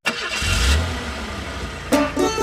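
Bus engine sound effect: a motor starts up suddenly with a low rumble, loudest about half a second in, then runs steadily. Plucked banjo music comes in near the end.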